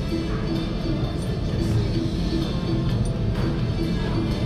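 Video keno machine drawing a round: a short electronic tone repeats evenly a few times a second as the numbers come up, over the steady din of a casino floor.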